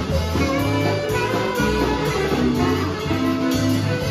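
Live blues band playing an instrumental passage of a slow blues: electric guitar, bass guitar, drums and saxophone, with a steady drum beat under held notes.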